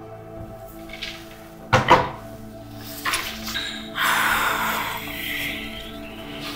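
Soft background music with a sharp double knock about two seconds in, the loudest sound, as a desk phone handset is hung up, and a smaller knock a second later. In the last two seconds comes a rustle of paper being handled.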